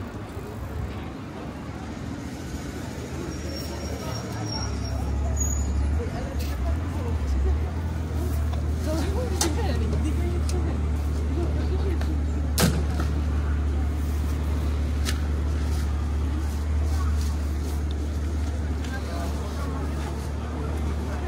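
City street traffic with a heavy vehicle's engine running close by: a steady low rumble that builds over the first few seconds and then holds, with a single sharp click about two-thirds of the way through.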